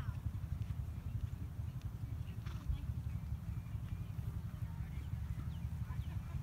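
Continuous low rumbling noise of wind buffeting the microphone outdoors, with a few faint short chirps above it.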